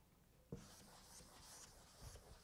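Faint writing by hand: a sharp tap about half a second in, then light scratchy strokes of the pen on the writing surface.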